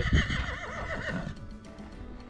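A horse whinnying, one quavering call of about a second, starting just after a short laugh.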